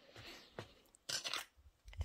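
Handling noise: short rustles and scrapes as the handheld camera and books are moved along a wooden bookshelf, the loudest about a second in.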